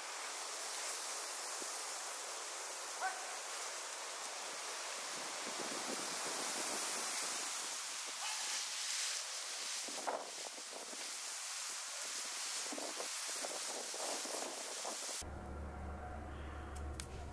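Steady outdoor wind hiss with rustling as bundles of cut green plants are pulled and tossed, and two brief clicks about three and ten seconds in.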